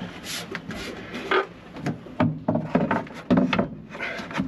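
Victron MultiPlus-II inverter casing scraping and knocking against its wall bracket and plywood backboard as it is hung in place: a series of irregular rubs and clicks.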